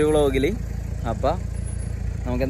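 A man talking briefly, his words ending about half a second in with one short fragment after, over a steady low rumble.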